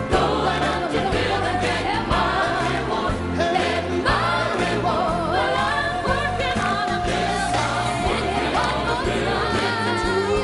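Gospel song with singing over a band: voices carrying the melody above a stepping bass line and regular drum beats.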